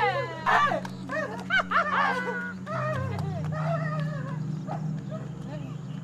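A person's voice giving short, high-pitched yelping cries one after another, over a steady low hum.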